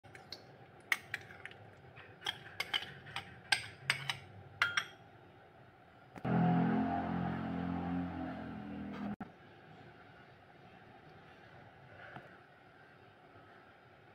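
A metal spoon clinking and scraping against ceramic bowls as mayonnaise is spooned out, a series of sharp clinks over the first five seconds. About six seconds in, a louder steady low drone sounds for about three seconds and cuts off suddenly.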